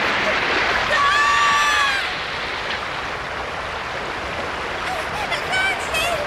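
Rushing water of a flooded stream in heavy rain, a steady roar throughout. About a second in, a child's voice cries out once in a long held wail lasting about a second.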